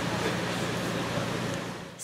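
Steady outdoor urban background noise: an even hiss over a faint low hum, fading just before the end.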